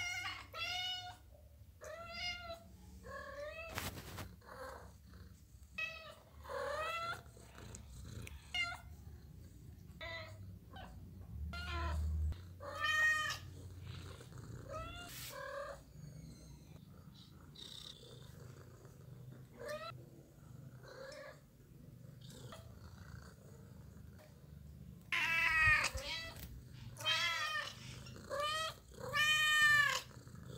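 House cats meowing repeatedly from behind a closed door, short rising-and-falling calls every second or two, louder and longer near the end: they are asking to be let in. A single sharp knock sounds about four seconds in.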